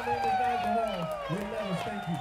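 Several voices shouting and whooping, with long falling calls and short yells, and no music playing.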